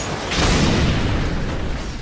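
Anime fight sound effect: a sudden loud rushing blast with a deep rumble. It starts about a third of a second in and slowly dies away.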